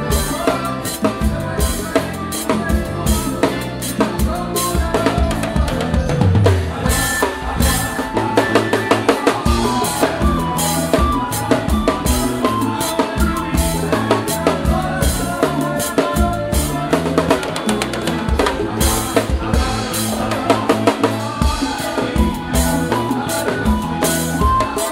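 Drum kit played in a live forró band: kick, snare and rimshots keep a steady driving beat with cymbals, over bass and keyboard.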